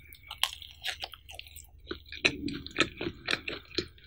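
Close-miked biting and chewing of a cheese-topped pizza slice: wet mouth sounds with sharp, crackly clicks, coming about twice a second and loudest in the second half.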